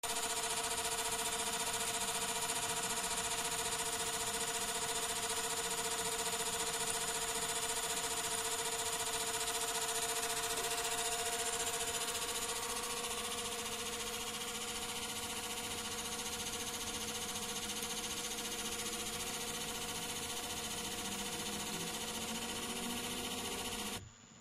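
A bench gear pump and its electric motor running at a steady, constant speed: a continuous hum with several steady whine tones over a hiss of circulating water. It gets a little quieter about halfway through.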